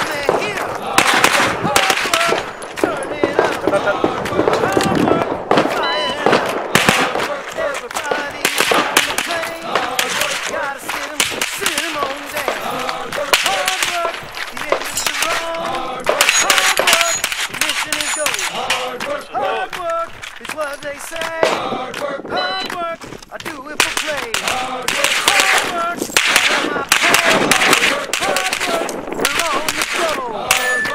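Compensated Sig MPX pistol-caliber carbine firing rapid strings of shots. The strings come in clusters with pauses of a few seconds between them.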